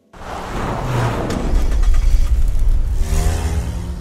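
A car engine sound that starts abruptly, builds to a loud, dense rumble and rises in pitch about three seconds in as it revs, then begins to fade.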